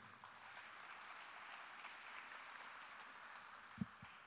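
Faint audience applause, an even patter of clapping heard from a distance, with a brief low sound near the end.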